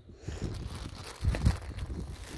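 Thin clear plastic bag crinkling and rustling as it is handled and pulled off a rolled canvas, with a low thump about halfway through.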